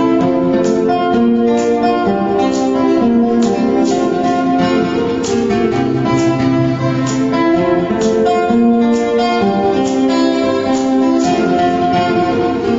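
Acoustic guitar played solo, plucked notes in a steady rhythm over a changing bass line.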